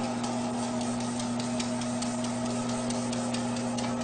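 A steady electric motor hum with faint, quick ticking over it.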